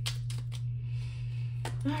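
A deck of tarot cards being shuffled by hand, with short regular taps about four a second that stop about half a second in. A steady low hum runs underneath.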